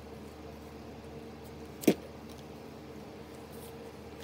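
Quiet room tone with a steady low hum, broken once about halfway through by a single short, sharp click.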